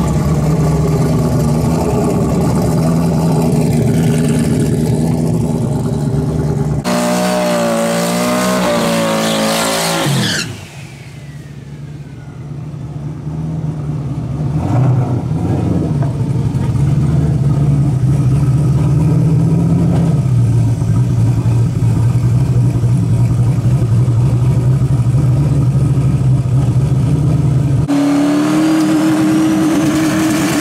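Turbocharged LS V8 drag car's engine running with a steady note, then revved hard and wavering for about three seconds in a burnout, falling away with a dropping whine as it lets off. It settles back to a steady note, and near the end it is brought up and held at higher revs while staging for the launch.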